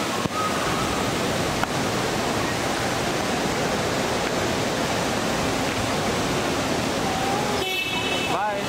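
A steady, even rushing noise with no clear rhythm or pitch.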